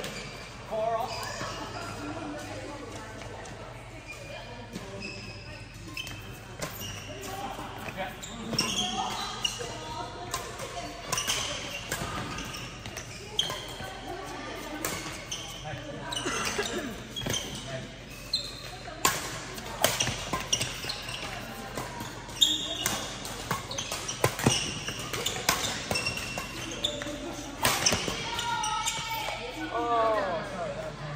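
Badminton rally in a large hall: sharp racket strikes on the shuttlecock at irregular intervals, echoing, over steady background chatter from players on nearby courts.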